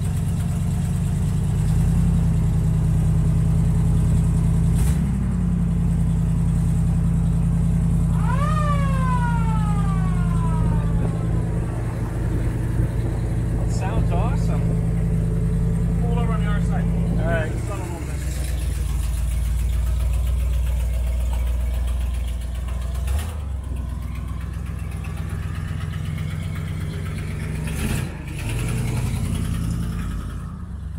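An old hearse's engine running at idle, a steady low hum that steps down to a deeper note about eighteen seconds in.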